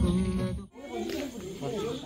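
Singing with guitar accompaniment cuts off abruptly a moment in, and a quieter voice follows.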